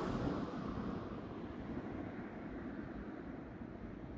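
Faint, steady low outdoor background rumble with no distinct events, easing slightly toward the end.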